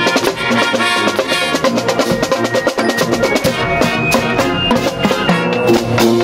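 A marching band playing on the move: a brass section of trumpets and trombones over a drumline of bass drums, tenor drums and cymbals keeping a steady beat. Partway through, the brass line climbs higher.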